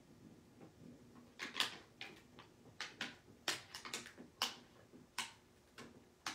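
Clear plastic carrier sheet of heat transfer vinyl being peeled back and pressed down by fingertips on a wood panel: a series of irregular, sharp crackles and clicks, starting about a second and a half in.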